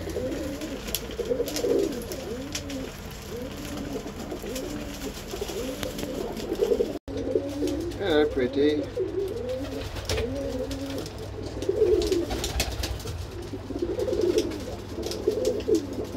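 Domestic Birmingham Roller pigeons cooing in a loft, many overlapping, repeated coos from several birds.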